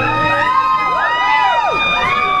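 Audience whooping and cheering: several overlapping high 'woo' calls, each rising and then falling in pitch.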